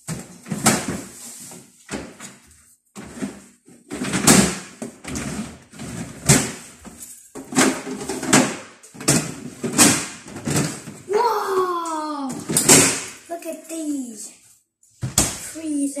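Plastic refrigerator drawers being pulled open, slid shut and rummaged through, with a string of sharp knocks and clatters. A child's voice calls out with rising and falling pitch in the last few seconds.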